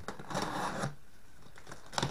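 A small hand tool cutting and prying open the taped end of a cardboard shipping box: a scraping, rustling cut about half a second in, then a sharp click at the end.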